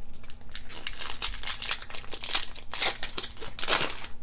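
Foil trading-card booster pack wrapper crinkling and tearing as it is ripped open by hand. It makes a string of crackly rustles, loudest over the second half.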